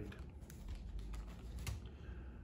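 Light handling noises: a few soft clicks and taps as a paper booklet and small items are handled over a hard plastic case, the sharpest tap near the end, over a faint low hum.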